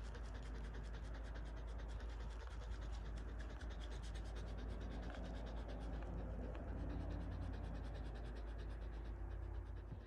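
Siberian husky panting in a quick, even rhythm, with a steady low hum underneath.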